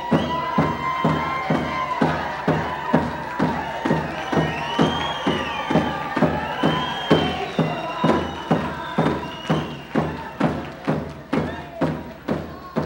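Tlingit dance song: a group of voices singing over a steady drum beat of about three strokes a second, with higher voices gliding up and down above the song in the middle.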